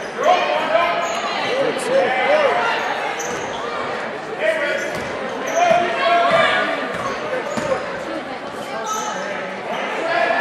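A basketball bouncing on a hardwood gym floor as it is dribbled, under shouting voices of players, coaches and spectators, echoing in a large gymnasium.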